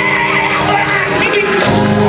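Live gospel praise music from a church band: electric bass, drum kit and keyboard playing together with sustained chords. A deep bass note comes in near the end.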